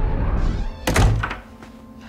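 A heavy door slams shut with a single loud thunk about a second in, cutting off a low rumbling score; a quiet steady tone is left ringing after it.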